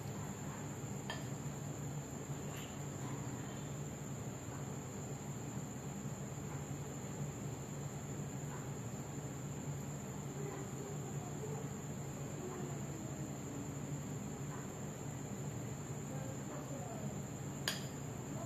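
A silicone spatula stirring a thick mix of crushed Oreo biscuits and milk in a ceramic bowl: soft scraping with a few light clicks against the bowl, the sharpest near the end. Underneath runs a steady low hum and a constant high-pitched whine.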